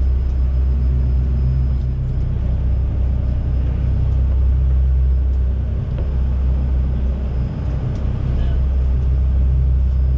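Sportfishing boat's engines droning steadily while underway, heard from inside the cabin as a low, even rumble.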